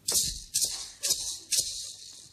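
A pair of maracas shaken in four sharp strokes, about two a second.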